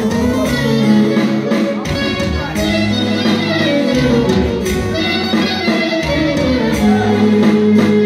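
A live Greek folk band plays dance music through PA speakers: a clarinet melody with sliding, ornamented notes over a bass line that changes about once a second.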